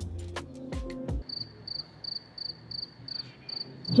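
Background music with a beat stops about a second in. Then a short high electronic beep repeats evenly, about three to four times a second.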